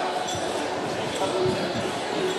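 Background chatter in a large sports hall, with a few dull thumps about a third of a second, a second and a half, and near two seconds in.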